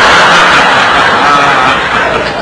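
Studio audience laughing and applauding loudly, the clapping easing slightly near the end.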